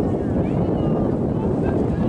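Wind buffeting the microphone, a loud steady low rumble, with faint distant voices calling behind it.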